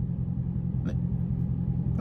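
Dodge Challenger Scat Pack's 392 HEMI V8 idling, a steady low rumble heard from inside the cabin. A faint click comes about a second in.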